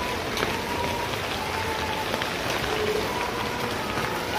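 Steady rain falling on a paved courtyard, an even hiss with scattered close drop ticks.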